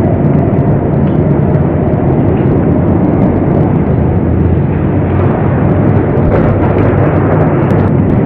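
Loud, steady road noise of a moving car: a deep rumble under a constant hiss.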